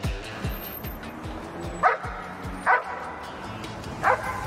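A dog gives two short barks, about two and three seconds in, over background music with a steady thumping beat.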